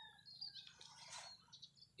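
Near silence, with a few faint bird chirps in the background, mostly in the first second.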